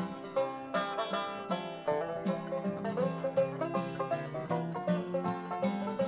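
Live bluegrass instrumental break between verses: five-string banjo picking a fast stream of notes over acoustic guitar rhythm.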